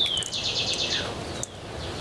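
Wild birds calling: a sharp falling whistle, then a fast trill of high notes lasting about half a second, over steady outdoor background noise.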